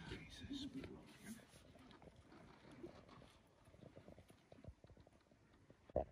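Near silence: faint background with a low murmur of voices in the first second or so and a few soft ticks.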